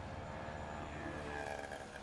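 Highway traffic passing close by: a bus drives past, and an auto-rickshaw follows near the end, over a steady low rumble of engines and tyres.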